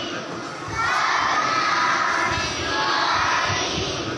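A large group of children shouting together in unison, a loud chorus of many voices that swells about three-quarters of a second in and dips again just before the end.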